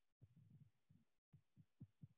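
Near silence, with a few very faint low thuds.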